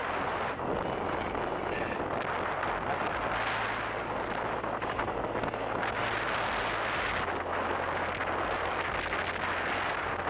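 Steady rush of wind and tyre noise from a bicycle ridden at speed on asphalt, heard through a head-mounted Google Glass microphone.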